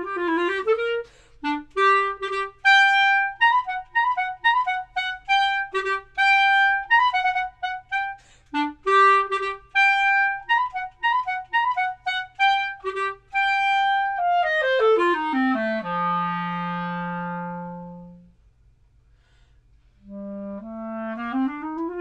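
Solo clarinet playing a quick waltz étude built on chromatic and trill fingerings. It plays rising runs, then short detached notes over a recurring low note, then a long descending run to a low note held for about two seconds. After a pause of about two seconds, rising runs start again.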